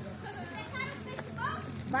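People's voices in the background, with two short, high-pitched calls: one about half a second in and one near the end. A steady low hum runs underneath.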